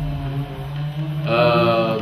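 A man's voice holding one drawn-out vowel, a hesitation sound, in the second half, over a steady low hum.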